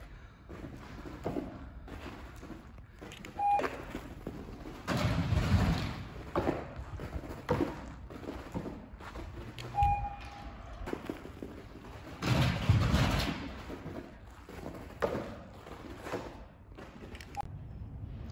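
Scattered thumps and knocks with two longer bursts of rustling noise, and two brief squeaks, one about three and a half seconds in and one about ten seconds in.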